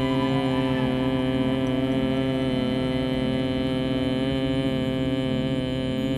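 A man's long, steady, low hum on one unbroken pitch: the 'bee breath' hum of bhramari pranayama, made on a slow exhale.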